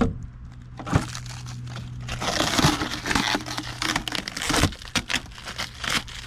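Clear plastic shipping wrap crinkling as it is peeled and pulled off a new lawn mower's cover: a few sharp crackles at first, then a dense stretch of crinkling from about two seconds in until near five seconds.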